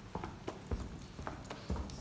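A series of short, sharp knocks and thumps, about seven in two seconds at uneven spacing, as things are handled and moved among a seated audience.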